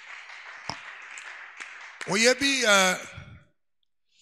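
A man's voice through a handheld microphone: faint breathy noise with a couple of small clicks, then about two seconds in a drawn-out voiced sound with a bending pitch, lasting about a second.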